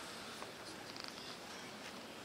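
Quiet ice rink arena ambience: a steady low hum of the hall, with a few faint ticks about a second in.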